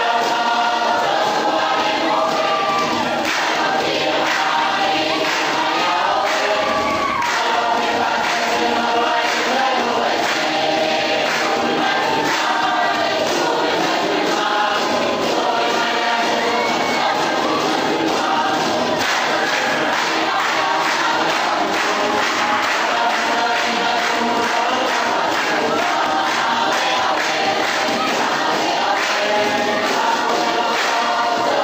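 A Pacific Island dance song: a group of voices singing together over a steady beat.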